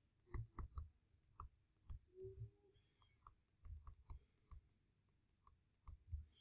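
Faint, irregular clicks and soft taps of a stylus on a tablet as handwriting is written out stroke by stroke, several a second.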